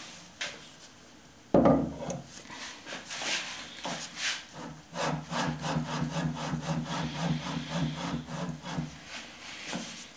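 A knock about a second and a half in, then a cast iron mini-lathe headstock rubbed back and forth in quick strokes on the inked bed ways, metal sliding on metal, to take a bearing print before scraping.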